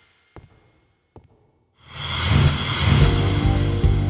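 Near silence with two faint clicks, then music comes in loud about two seconds in, with a steady low bass and a beat.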